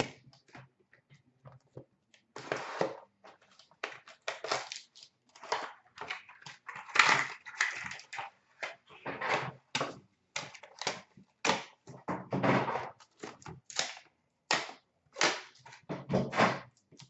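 A cardboard trading-card hobby box and its sealed card pack being opened by hand: irregular crackling, rustling and tearing of cardboard and wrapper in short bursts with brief gaps.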